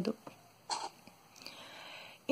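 A pause between spoken sentences: a brief faint mouth click, then a soft in-breath near the end.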